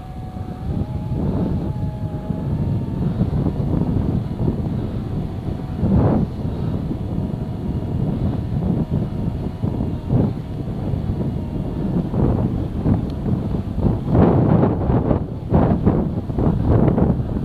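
A vehicle engine running as it drives slowly over packed snow, its pitch rising slightly in the first couple of seconds, with wind buffeting the microphone and gusting louder near the end.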